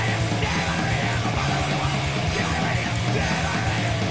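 A live punk-metal band playing loud and without a break: distorted electric guitars, bass guitar and drums, with shouted vocals over them.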